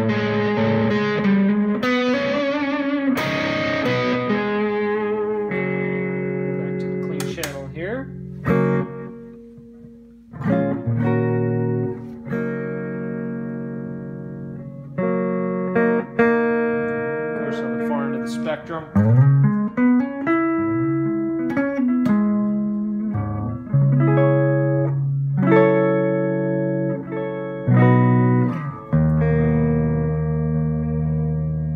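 Electric guitar played through a Line 6 M5 stompbox modeler on its Digital Delay with Mod preset: chords ringing out with delay repeats and a wavering, detune-like modulation. There is a brief quiet pause about ten seconds in, then more strummed chords and a few sliding notes.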